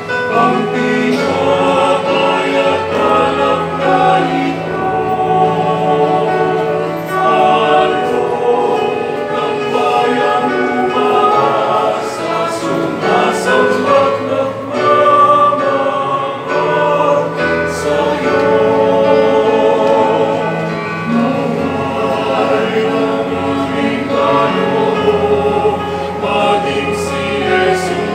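A small mixed choir of women's and men's voices singing a church hymn in parts, accompanied by a digital piano with sustained low notes.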